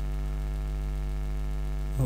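Steady electrical mains hum with a stack of evenly spaced overtones.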